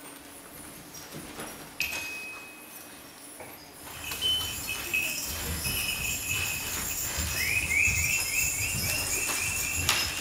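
A bell chime is struck once about two seconds in and rings briefly. From about four seconds, jingling bells and high ringing tones carry on, with a fast shimmering tremolo near the end and soft low thumps underneath.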